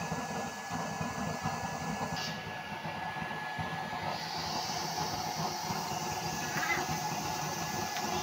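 Homemade used-oil burner stove with an electric blower fan, running steadily under a boiling pot: a continuous rumbling roar of forced-draft flame and fan with a thin steady whine.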